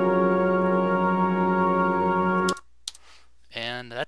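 Synth pad made from a sampled Chinese flute, drenched in long reverb and lightly compressed: one sustained, steady tone rich in overtones that cuts off suddenly about two and a half seconds in.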